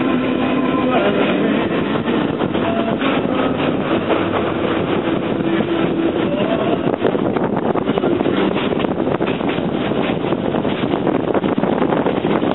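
Passenger train running at speed, heard through an open carriage window: a loud, steady rumble of wheels on the rails mixed with rushing air, with irregular clatter.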